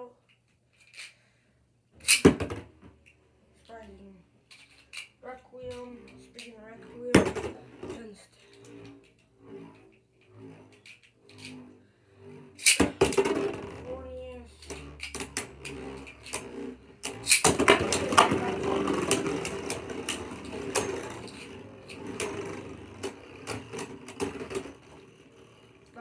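Two Beyblade Burst spinning tops spinning and colliding in a plastic stadium, a rattling scrape broken by sharp clacks. There are loud knocks about two and seven seconds in. The clatter grows loud from about thirteen seconds, is loudest from about seventeen seconds, and fades near the end.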